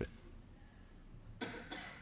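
Quiet room tone, broken about a second and a half in by a short, breathy cough from a man.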